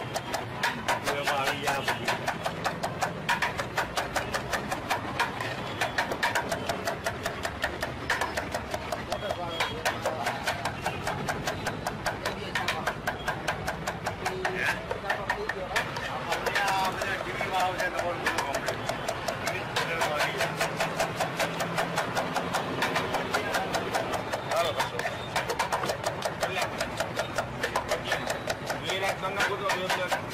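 A kitchen knife chopping onions on a wooden cutting board in a very fast, even run of strikes, with voices talking underneath.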